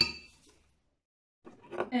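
A spoon clinking against a glass measuring jug, the glass ringing on and fading out within about half a second.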